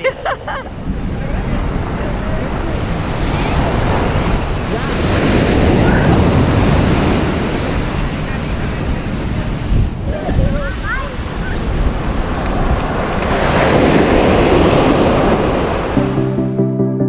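Wind buffeting the microphone over the rush of surf breaking on the beach, swelling louder twice.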